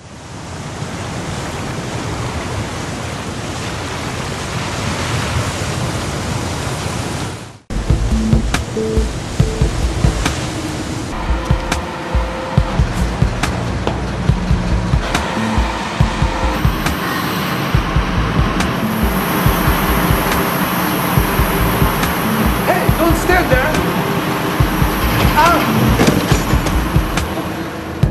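A steady rushing noise like wind or surf cuts off suddenly about seven and a half seconds in. It is followed by mooring work on a ship's deck: repeated knocks and clanks over a low rumble, with a high whine later on.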